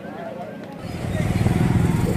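A motor engine running with a low rumble that comes in loud about a second in, under people talking.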